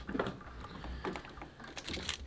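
A few faint, scattered light clicks and handling noises.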